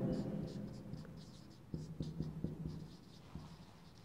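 Marker pen writing on a whiteboard: a quick run of short, faint strokes about halfway through, with a couple more near the end.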